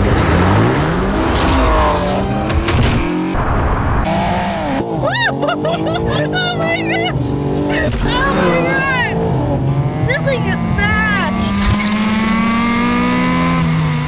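TJ Hunt's 2022 BMW M4 Competition, its twin-turbo straight-six running hard through a titanium catback exhaust, revving up and down with bursts of tire squeal. Its pitch climbs in one long pull near the end.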